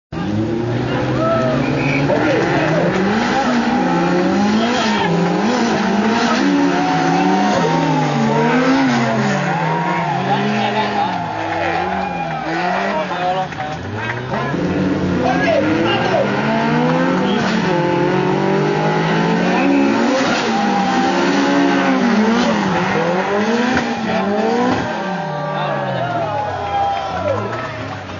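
Two drift cars' engines revving hard in tandem, their pitch climbing and dropping every second or two as the drivers work the throttle through the slides, with tyres squealing.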